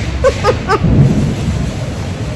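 Wind buffeting a phone's microphone: a loud, uneven low rumble. Three short voice-like sounds come in the first second.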